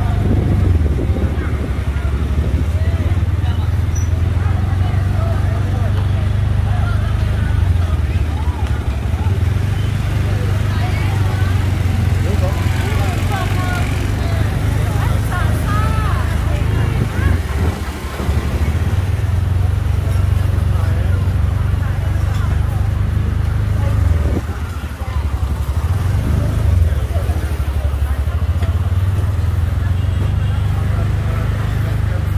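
Busy street market: scattered chatter of passers-by and motorbikes moving past, over a steady low rumble that drops out briefly twice in the second half.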